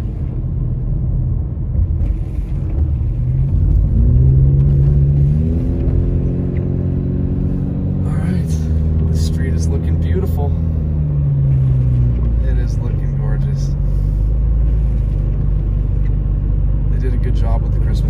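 A car's engine and tyres heard from inside the cabin, with a steady low rumble from the wet road. The engine note rises as the car accelerates about three to five seconds in, holds, then falls away between ten and twelve seconds.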